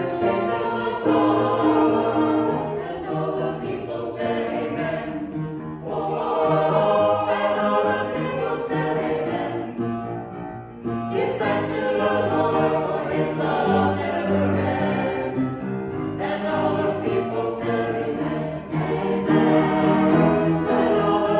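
A small mixed choir singing together in phrases, with a brief pause about halfway through.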